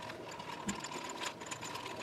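Small steel nuts, washers and a bolt clinking and rattling against each other and the sides of a plastic cup of degreaser as the cup is swirled by hand, a quick irregular run of light clicks.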